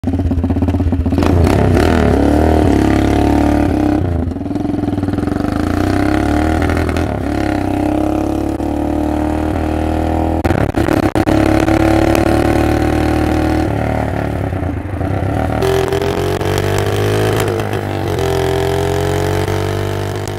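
A 200cc Lifan 163FML single-cylinder four-stroke engine in a Doodlebug minibike is being ridden. It revs up and eases off several times, its pitch climbing with each pull. The owner judges the engine to run a little lean under load.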